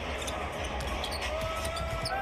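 A basketball bouncing on a hardwood court during play, repeated sharp knocks, with a drawn-out sneaker squeak near the end.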